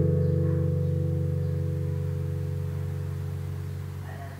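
The closing strummed acoustic guitar chord of a song rings out and fades slowly and evenly, played back through a pair of Bowers & Wilkins 704 floorstanding loudspeakers.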